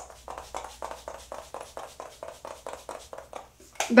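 Makeup setting spray pumped over the face in a quick, even run of short sprays, about seven a second, misting the finished base makeup.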